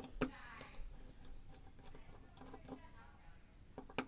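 Faint, irregular metallic clicks and ticks of a thin steel tool working in the keyway of a brass Corbin Russwin mortise cylinder.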